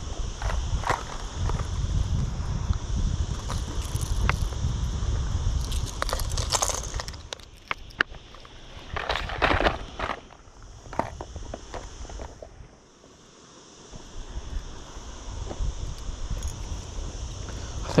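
Low rumble of water and air moving against an inflatable paddle board under way, fading out about two-thirds of the way through, with scattered knocks, clicks and rustles of fishing gear being handled on the board.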